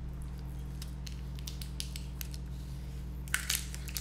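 Small clicks and crinkles of a new hot sauce bottle being opened by hand, fingers picking at the plastic seal and twisting the cap, with a few sharper clicks near the end. A low steady hum lies underneath.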